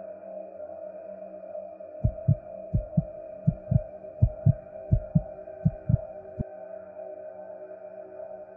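Heartbeat sound effect: six slow double thumps and a last single one, starting about two seconds in and stopping a couple of seconds before the end, over a steady dark ambient music drone.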